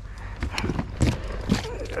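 A few sharp knocks and splashes, roughly half a second apart, as a hooked fish is fought alongside a plastic kayak and the landing net is brought into the water, with short grunts from the angler between them.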